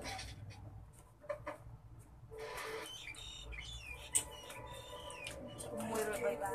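Birds chirping: a series of short gliding chirps in the second half, over a faint low hum, with a couple of faint clicks earlier on.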